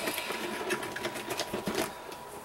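Rapid, irregular clicking of hard plastic: a Bakugan toy figure's hinged parts being folded and snapped closed back into its ball form.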